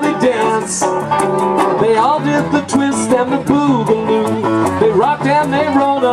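A live band plays an upbeat children's song: acoustic guitar strummed over a steady percussive beat, with a sung melody.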